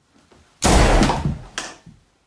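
A sudden loud bang about half a second in, trailing off as a rough, noisy clatter over about a second, then a second, shorter knock near the end.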